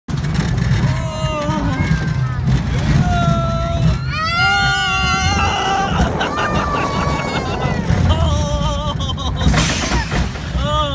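Roller coaster riders, a child among them, screaming and whooping in long, high-pitched wordless cries over the steady low rumble of the coaster running along its steel track. A loud rush of wind hits the microphone near the end.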